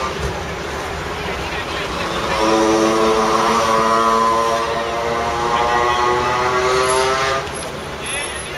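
A motor vehicle engine passing: a steady pitched hum that swells about two and a half seconds in, drifts slightly lower in pitch, and fades away shortly before the end.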